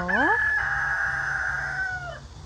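A rooster crowing: one long, held final note of the crow that lasts almost two seconds.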